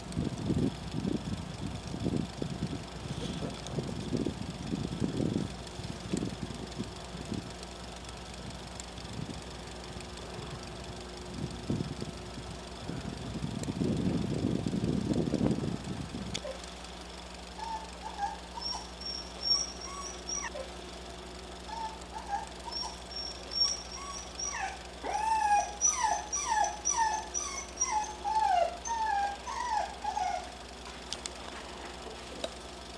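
For about the first half, irregular low rumbling noises that stop abruptly. Then come short, wavering, high cries that bend up and down in pitch, a few at first and then a quick run of them near the end, with faint high chirps above.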